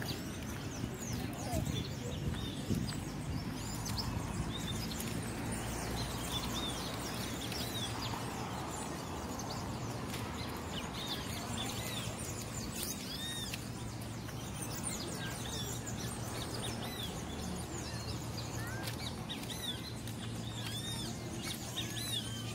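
Many birds chirping in the trees, short arched calls coming thicker in the second half, over a steady low background hum.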